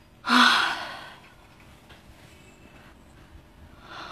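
A woman's single loud, breathy exasperated sigh, starting about a quarter second in and fading within a second.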